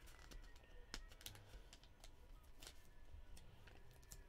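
Faint, scattered clicks and taps of trading cards and their plastic sleeves and holders being handled on a table, the sharpest tap about a second in.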